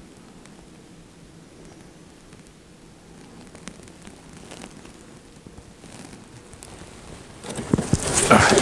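Faint steady outdoor background hiss with a few light clicks, then, near the end, loud rustling and knocking as gear is handled at a plastic tote.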